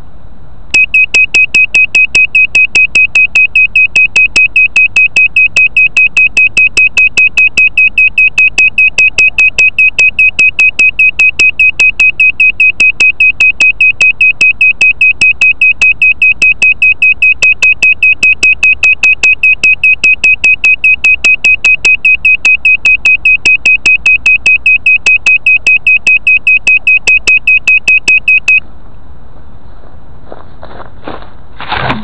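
Loud electronic beeper pulsing rapidly at one high pitch, several beeps a second. It pauses briefly at the start, resumes under a second in, and cuts off abruptly near the end.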